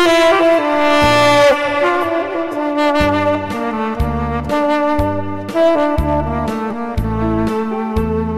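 Tenor saxophone playing a slow trot melody over a backing track with a steady bass-and-drum beat; it opens on a long held note that bends downward about a second and a half in, then moves through shorter phrased notes.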